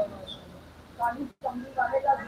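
A crowd's shouted chant cuts off at the start, leaving a hushed hall, and then a voice speaks in short, broken phrases. The sound drops out completely for an instant about halfway through.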